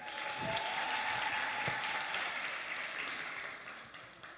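An audience applauding, building up in the first second and dying away near the end.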